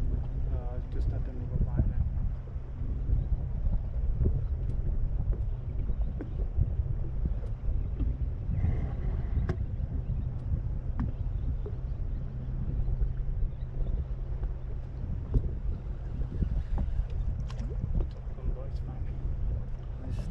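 Wind rumbling on the microphone over choppy water around a small boat, with a steady low hum underneath.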